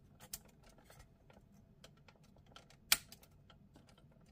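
Hard plastic parts of a transforming toy jet figure clicking as they are handled and pushed into place, with scattered light clicks and one sharp click a little before three seconds in.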